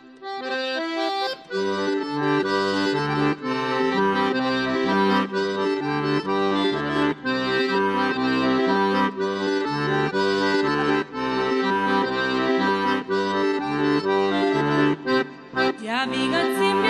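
Button accordion playing an instrumental introduction: a melody over a bass line that changes note under it, before the singing comes in.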